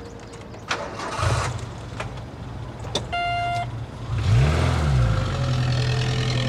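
Car engine starting about a second in and settling into an idle, with a short beep about three seconds in. The engine then revs up and back down once and runs on steadily.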